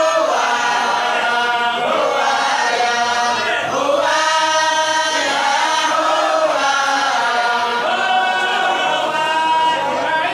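A group of voices chanting together in unison, in melodic phrases of a second or two that rise and fall in pitch.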